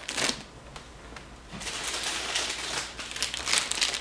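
Plastic retail packaging crinkling as bagged toys are handled: a brief rustle at the start, then a longer stretch of crinkling through the second half.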